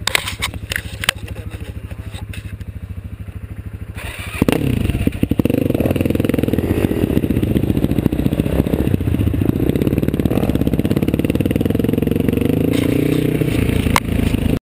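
Quad (ATV) engine idling with an even beat, with a few sharp clicks in the first second. About four seconds in it revs up as the quad pulls away, then keeps running loudly with the throttle rising and falling while riding the trail.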